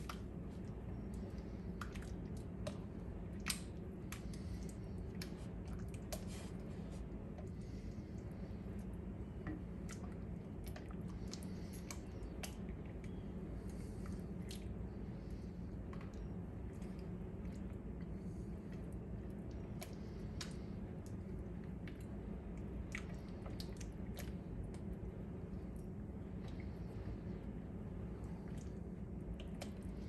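Thick raisin pie filling bubbling in a stainless saucepan as it is stirred with a silicone spatula: scattered soft pops and squelches over a steady low hum, the cornstarch-and-sugar mix thickening on the heat.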